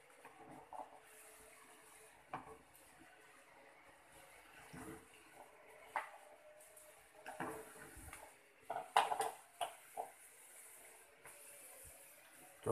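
A wire-mesh strainer stirs bean sprouts in an aluminium pot of boiling water: faint bubbling, with scattered light knocks and scrapes of metal on the pot, a quick run of them about nine seconds in.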